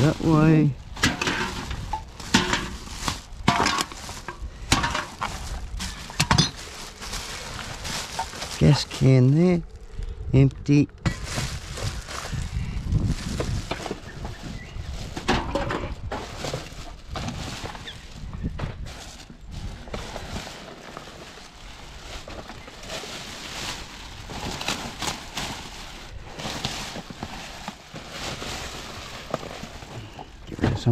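Plastic rubbish bags rustling while drink cans and bottles clink and knock as they are rummaged through by hand, a steady run of short clinks and thunks. A brief voice-like sound comes just after the start and again around nine to eleven seconds in.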